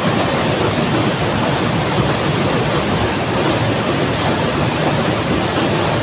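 Rushing water of a small waterfall and the white-water rapids below it, a steady, unbroken noise.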